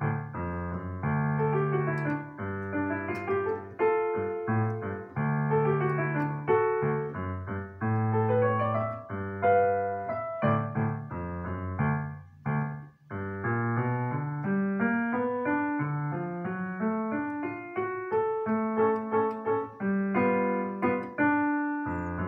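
Digital piano playing a boogie-woogie piece, a stepping left-hand bass line that keeps climbing under right-hand chords and melody, with a brief drop in loudness about halfway through.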